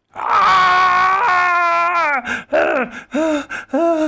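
A human voice screaming and wailing in pain: one long held cry that slides down in pitch about two seconds in, followed by shorter cries that each drop in pitch.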